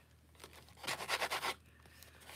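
Stiff paper rustling and crinkling as it is handled, a burst of crackly scratches lasting about a second in the middle. The piece is a napkin-covered journal tag.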